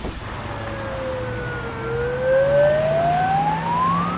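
Ambulance siren: one slow wail that dips a little in pitch and then rises steadily, over a steady low engine hum.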